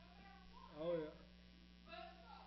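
A single short, drawn-out vocal cry from a person, its pitch rising and falling, about a second in, with a fainter voiced sound near the end, over a steady low hum.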